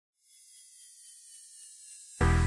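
A faint hiss with several thin whistle-like tones slowly falling in pitch, growing a little louder, then cut off by loud music near the end.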